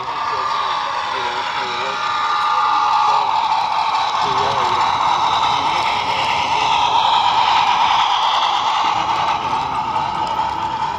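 A model train (a steam-outline locomotive hauling freight cars) running past close by with a steady whir of motor and wheels on the rails, loudest in the middle as it passes. Voices chatter in the background.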